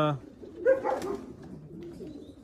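Racing pigeons cooing softly in their loft, a low steady murmur. A man's drawn-out "uh" ends just at the start and a short voice sound comes about half a second in.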